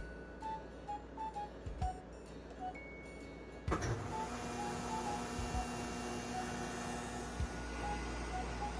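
Nissei Freezer NA-1412AE soft-serve ice cream machine starting up about four seconds in: a sudden loud start, then its motor running with a steady whirr and low hum. A short beep from its control panel comes just before.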